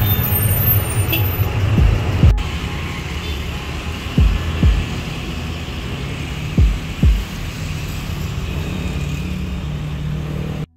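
Road traffic: a steady low vehicle rumble, with three pairs of short low thumps about half a second apart, roughly two, four and seven seconds in.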